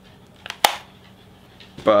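Two sharp clicks from a small Canon HD camcorder being handled, the second one louder, just over half a second in.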